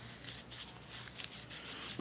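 Faint rustling with a few light ticks over a low steady room hum, in a pause between speech.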